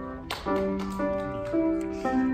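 Grand piano played slowly: after a short sharp knock, notes resume about half a second in, roughly two a second, over a held low note.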